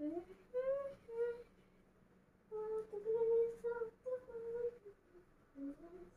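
A person humming softly, a few short phrases of held notes with brief pauses between them.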